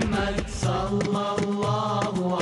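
Melodic sung chant in the style of an Islamic nasheed: voices gliding between notes over a steady low drone.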